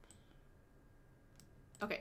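Quiet room tone with a couple of faint computer clicks while code is being edited, one at the start and one about one and a half seconds in. A woman says 'Okay' at the very end.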